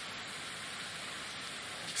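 Steady hiss of the recording's background noise, even and unbroken, with no speech.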